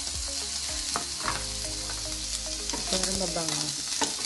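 Beef cubes sizzling in oil and melting butter in a nonstick frying pan, a steady crackling hiss with a few light clicks.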